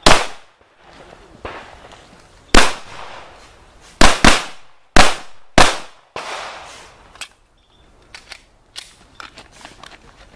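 Pistol shots fired close to the microphone: one shot at the start, another about two and a half seconds in, then four in quick succession between about 4 and 6 seconds, each with a short echo. Fainter pops and clicks follow in the last few seconds.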